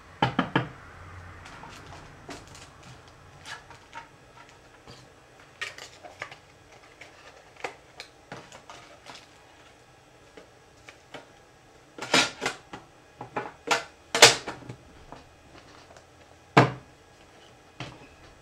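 Scattered clicks and knocks of hard items being handled and shuffled. There are loud ones right at the start, a quick cluster about twelve to fourteen seconds in, and a single sharp knock near the end.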